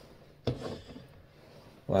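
A man's voice makes a brief, wordless hesitation sound about half a second in, then there is quiet room tone until he starts speaking again at the very end.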